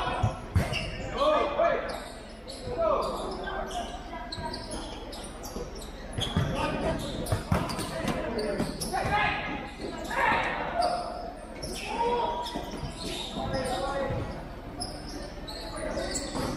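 Futsal ball being kicked and bouncing on an indoor court, several short knocks at irregular intervals, with players shouting to each other, echoing in a large hall.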